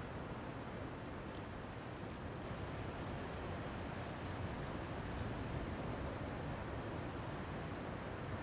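Steady low rumble of outdoor background noise, like wind on the microphone, with a few faint ticks from hands working the bait and line.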